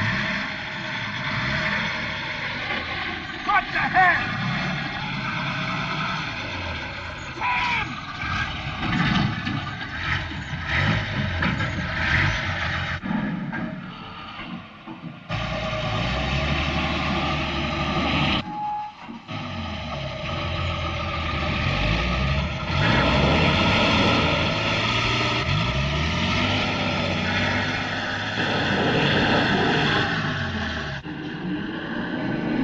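Film soundtrack of a truck engine running and revving under strain, with mechanical knocks and steady machine tones, the sound changing abruptly at several cuts.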